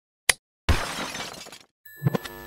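Sound effect of an old television switching on: a sharp click, then a loud burst of static hiss that fades away over about a second, with a faint high whine starting near the end.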